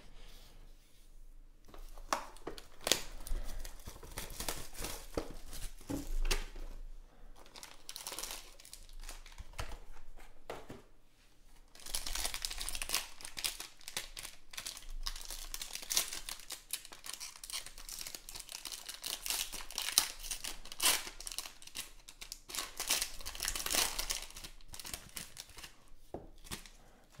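Foil trading-card pack wrapper crinkling and tearing as it is handled and ripped open by hand. The dense crackle starts about two seconds in, eases briefly near the middle, then grows busier and stays so to the end.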